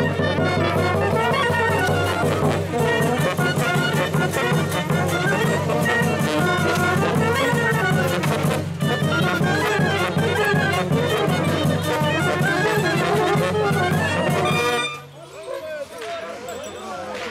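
Brass band (fanfară) playing a lively tune on trumpets and horns over a steady bass drum beat; the music stops suddenly about a second before the end.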